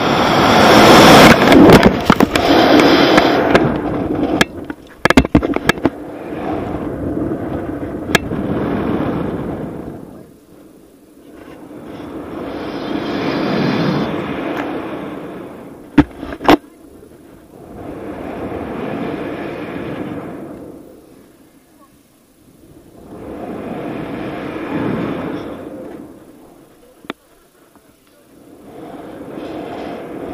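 Wind rushing over a rope jumper's body-mounted camera microphone: a loud rush through the first few seconds of the fall from the chimney, then wind noise swelling and fading about every five and a half seconds as he swings back and forth on the rope. A few sharp clicks come about halfway through and again near the end.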